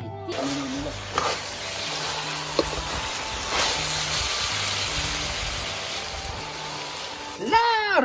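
Chicken pieces sizzling as they are stir-fried in a wok, a steady hiss that starts just after the opening and stops abruptly near the end, under background music. A voice comes in right at the end.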